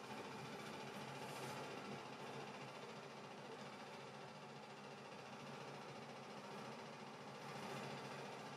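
Faint, steady room tone: a low hiss with a light hum and no distinct events.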